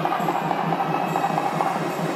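Temple ceremonial music: a steady drone with a quick, even drum beat of about five beats a second.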